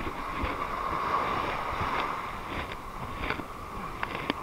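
Small surf waves washing up over sand and rocks at the water's edge, with wind rumbling on the microphone and a few light clicks.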